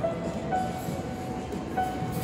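Upright piano playing a slow melody of held notes, a new note every half second to a second, over a steady background of hall noise.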